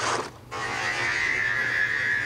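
Onboard sound of a racing go-kart on the track: a steady high whine, broken by a short sudden dropout about half a second in.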